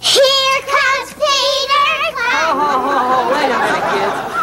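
High children's voices starting abruptly: two drawn-out, wavering sung or called notes, then several voices chattering over each other.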